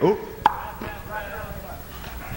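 Stage noise between songs on a live concert recording: a sharp knock about half a second in, over faint voices.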